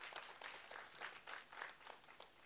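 Faint, scattered applause: a few people clapping irregularly.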